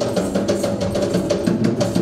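Fast, steady hand drumming on a Sri Lankan double-headed drum (bera), several strokes a second, over sustained low pitched tones.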